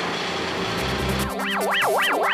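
A wood chipper running, blowing chips out of its chute, then about a second in, electronic music takes over: deep bass notes and a warbling synth tone swooping up and down.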